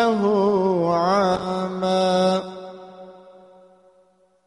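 A male reciter chanting the Qur'an in melodic tajwid style, his voice rising and falling in ornamented runs. He ends the phrase on a held note that fades away over the last second and a half.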